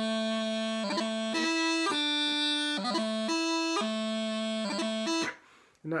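Bagpipe practice chanter playing a phrase of a pibroch crunluath breabach variation: held reedy notes broken by quick grace-note flourishes. The playing stops about five seconds in.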